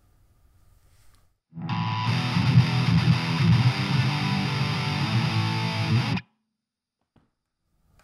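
Electric guitar through a Fender Champion 20 practice amp on its high-gain Metal voice, played as a distorted metal riff at volume two. The amp is not yet opened up at this volume, by the player's account. The riff starts about a second and a half in and cuts off suddenly about six seconds in.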